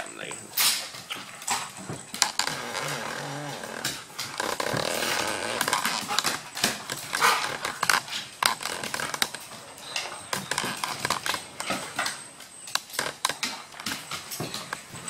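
Dogs at rough play: low growls and scuffling, with frequent sharp clicks and knocks of claws and paws on a wooden floor.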